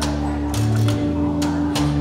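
Live acoustic country band playing between sung lines: acoustic guitar strumming over held bass notes, with a few sharp washboard strokes.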